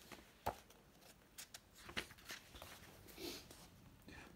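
Faint paper rustling with a few soft clicks as a book's page is turned by hand.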